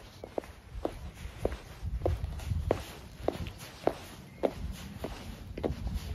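High-heeled shoes walking on a paved path: sharp heel clicks at a steady pace, a little under two steps a second, over a low rumble.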